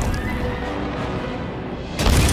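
Orchestral film score holding a tense note over the fading reverberation of a heavy blow against a wooden door. Another heavy bang on the door strikes right at the end.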